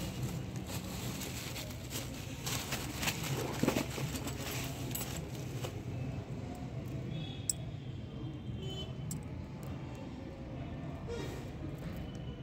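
Small metal hardware being handled: a chrome latch fitting and loose bolts tipped out of a plastic packet, clinking and rattling, busiest in the first half, over a steady low hum.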